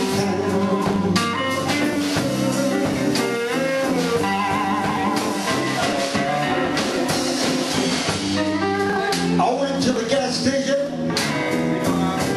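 Live blues band playing: electric guitars over bass guitar and drums, recorded from the audience.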